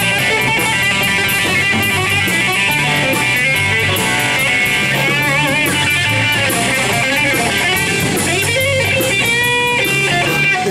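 Live blues-rock band playing instrumentally: a lead electric guitar from a Stratocaster-style guitar over bass and a drum kit with steady cymbal ticks. The guitar's notes waver with vibrato about halfway through, and a long held note rings near the end.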